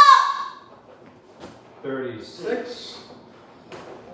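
A child's high-pitched vocal sound that cuts off just after the start, made with the effort of a medicine-ball sit-up. About two seconds in there is a brief lower-pitched voice, and a couple of faint taps follow.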